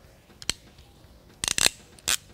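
Crimping pliers squeezing a spark plug wire terminal's second crimp onto the insulation: one sharp click about half a second in, then a quick run of clicks near the end.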